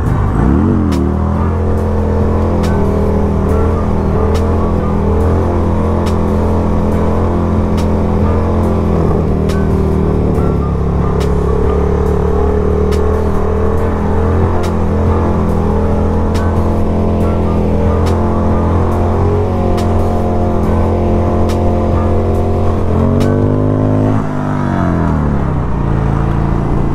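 1994 Harley-Davidson Sportster 1200's air-cooled V-twin with an aftermarket exhaust pipe, running under steady throttle at cruising speed, heard from the rider's seat. The pitch dips and climbs again about a second in, and rises, drops and climbs once more near the end as the revs change.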